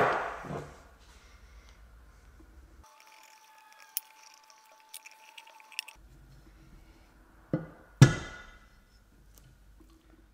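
A steel valve spring compressor being handled and fitted onto an aluminium cylinder head: a sharp metal knock with a short ringing decay at the start, then two more knocks about seven and a half and eight seconds in, the second loud and ringing. Light clicks fall in between.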